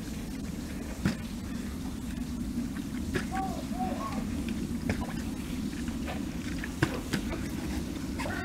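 Plastic water bottle being flipped and knocking down onto grass, about five short sharp knocks, the strongest about a second in, over a steady low rumble.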